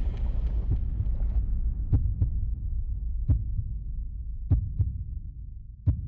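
Sound effect of a flame burning: a steady low rumble with scattered sharp crackles, its higher tones slowly dying away.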